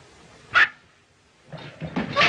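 A single short, sharp yelp about half a second in, then noise building near the end.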